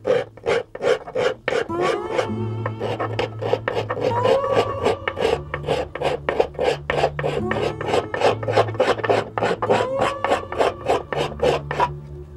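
Quick back-and-forth scraping of a hand abrasive along the unfinished wooden neck of a çiftelia, about three strokes a second, as the neck is smoothed to shape.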